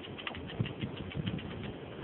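Fishing reel clicking rapidly, about nine ticks a second, stopping near the end, over a low rumble of wind and surf.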